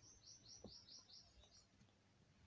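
Near silence with a small bird chirping faintly in the background: a quick run of about six short high chirps in the first second and a half.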